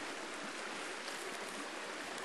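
A creek swollen by a day of rain, its fast water running over rocks with a steady, even rush.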